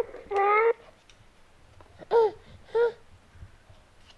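My First Sony EJ-M 1000 toy playing its recorded baby-crying sound through its small built-in speaker. A wailing cry comes first, then two short sobs about two and three seconds in.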